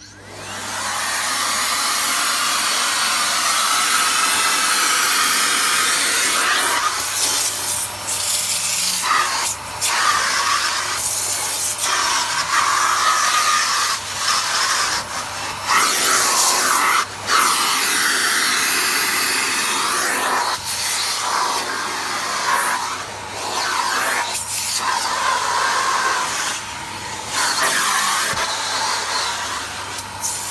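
Miele C3 Complete canister vacuum cleaner spinning up as it starts, then running steadily with its crevice tool drawn along the carpet edge. The rush of suction air dips and changes note again and again as the nozzle meets the carpet and the edges.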